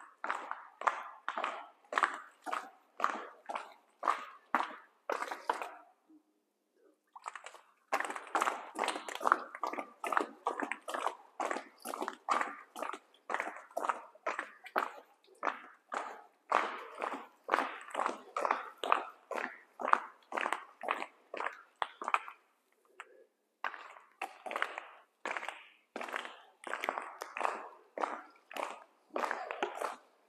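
An animal calling over and over, two or three short calls a second, with two brief pauses.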